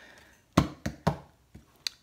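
A few short clicks: three about a quarter second apart starting about half a second in, then a single sharp click near the end.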